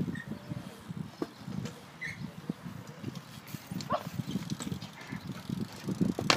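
BMX bike riding on a concrete skate park: tyres rolling, with scattered light clicks and knocks over an uneven low rumble, and a few sharper knocks near the end as the bike rolls up close.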